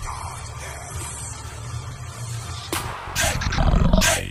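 A quiet breakdown in an electronic dance track: a low, growl-like rumble with hiss above it. Sharp percussive hits come back in about three seconds in.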